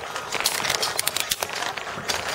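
Close rustling of fabric and gear against the camera microphone, with scattered small clicks throughout.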